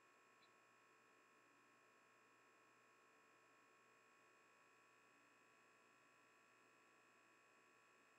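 Near silence, with only a faint steady background and no distinct sounds.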